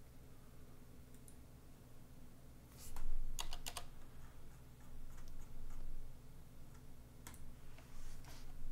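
Computer keyboard typing in irregular bursts, with a cluster of loud keystrokes about three seconds in and scattered lighter ones later, over a steady low hum.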